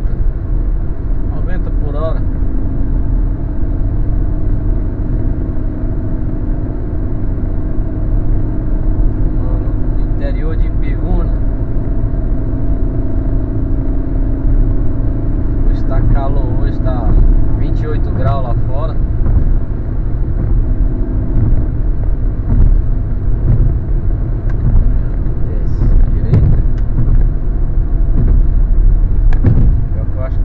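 Car cabin noise while driving at highway speed: a steady engine drone over a heavy low road and tyre rumble, heard from inside the car.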